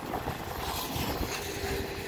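Double-stack container freight cars rolling past on the rails, a steady rumble of wheels on track, with a faint steady tone joining in about halfway through.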